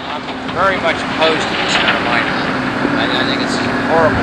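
Indistinct voices talking, over a steady low engine hum from machinery running at the mine.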